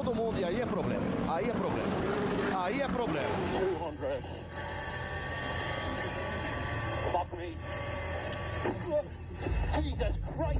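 Race commentary for the first few seconds, then in-car sound from a Skoda Fabia R5 Evo rally car on gravel, its engine running at a steady pitch.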